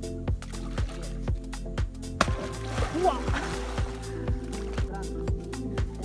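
Background music with a steady beat of about two strikes a second. About two seconds in, a sudden splash breaks through the music: a pirarucu striking at fish thrown onto the pond's surface.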